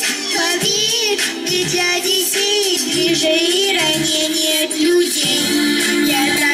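A young girl singing a song into a microphone over a recorded backing track, amplified through a PA.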